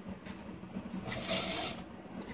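Soft rustle of a deerskin leather lace being drawn and wrapped around a hand drum's handle, one brief scraping sound about a second in, under a faint steady hum.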